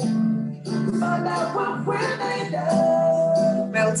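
A recorded pop song playing: a singing voice over a light acoustic backing with a shaker, holding one long note near the end.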